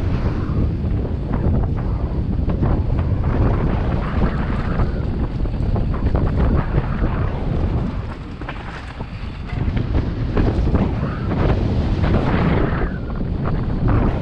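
Wind buffeting the camera microphone of a mountain bike descending a dirt trail, with tyre noise on the dirt and a steady run of rattles and knocks from the bike over bumps. The rush eases briefly about eight seconds in, through a bermed corner, then picks up again.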